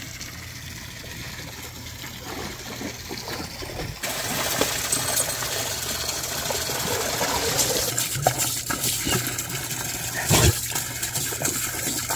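Shallow pool water splashing and sloshing as a dog wades through it, over a steady rush of water that gets louder about four seconds in. There is one brief bump near the end.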